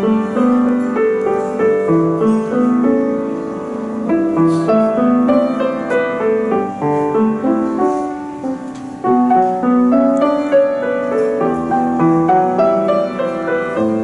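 Solo grand piano, a Cristofori, played as a steady stream of notes, with a brief softer moment about nine seconds in before the next phrase begins.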